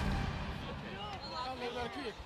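Background music cuts off at the start, then indistinct chatter of several people talking over one another.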